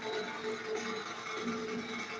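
Music from a television broadcast playing through the TV's speakers in a small room, a few notes held steady.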